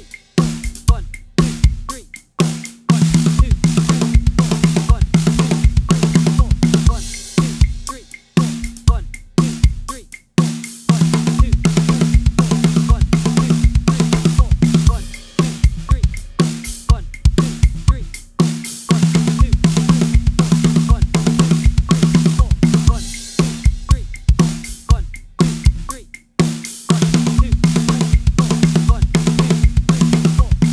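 Acoustic drum kit playing a linear two-bar fill built from six-note groups: hand strokes on snare and hi-hat alternating with pairs of double-bass-drum strokes. The fill is played about four times in a row, each pass lasting several seconds with a short break between.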